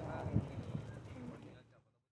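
Voices of people riding in an open safari jeep, with knocks and a low rumble from the jeep jolting along a dirt track. The sound fades out and goes silent shortly before the end.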